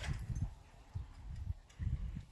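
Wind buffeting the microphone: low, uneven rumbling gusts with short lulls between them.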